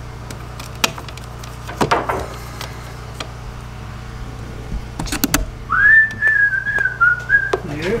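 A person whistling one slightly wavering note for about two seconds, starting a little past the middle, over a steady low hum. A few sharp knocks come before it, the loudest pair about five seconds in.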